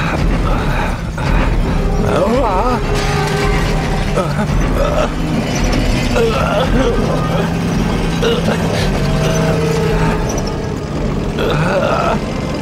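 Animated-film soundtrack of a huge armoured war machine moving past with a low steady drone and deep rumble. Brief vocal sounds and background music play over it.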